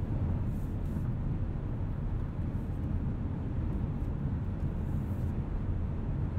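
Cabin noise of a 2020 Mazda CX-5 cruising at about 70 mph on the highway: a steady low road and tyre rumble with some wind noise coming through the glass.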